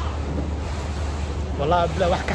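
Steady low engine rumble of a boat underway, with wind buffeting the microphone.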